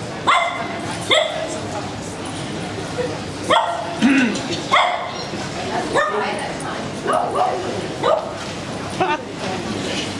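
Small dogs yapping, about nine short sharp barks at uneven intervals, over a background of people talking.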